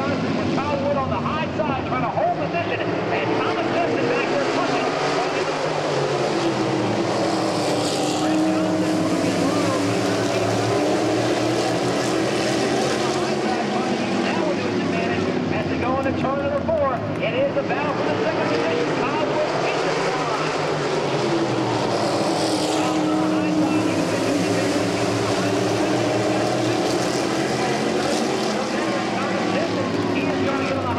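A field of modified race cars lapping a short oval, several engines sounding at once with their pitches sliding up and down as the pack goes around, swelling loudest as the cars pass about eight seconds in and again about twenty-two seconds in.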